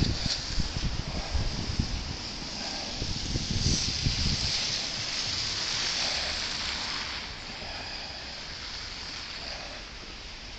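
Tyre hiss from traffic on a wet, slushy street, swelling through the middle and fading, with low rumbling wind or handling noise on the microphone in the first few seconds.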